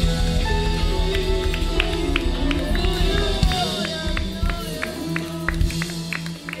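Live church worship music with sustained bass notes and voices singing over it. Short sharp percussive hits run through it.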